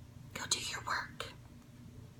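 A woman whispering a few short words, breathy and without voice.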